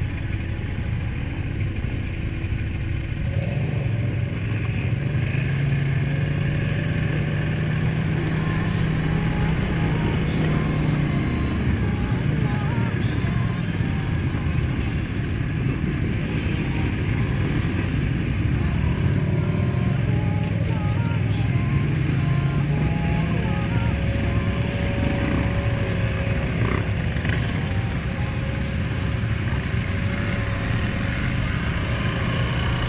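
Suzuki KingQuad 750 ATV's single-cylinder engine running on the trail, its pitch rising and falling with the throttle, over steady trail and tyre noise.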